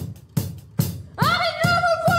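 A small rock band starting a song: a drum kit keeps a steady beat of about two and a half hits a second, and a woman's voice comes in a little over a second in, singing a long held note.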